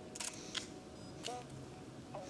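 A camera shutter clicking a few times, faintly, as flash-lit photos are taken.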